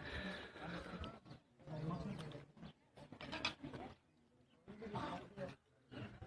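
Men's voices calling out and shouting in short bursts with brief gaps, low and roar-like at times.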